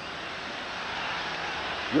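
Stadium crowd noise, a steady roar that swells slightly through the middle, heard over a television broadcast feed.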